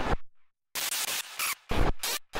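Databent drum-beat output from a Pure Data patch: stuttering, glitchy blocks of noise that cut in and out abruptly, with a brief silent gap about half a second in.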